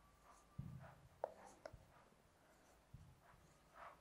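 Faint marker strokes on a whiteboard as numbers are written: a series of short, light scratches and ticks.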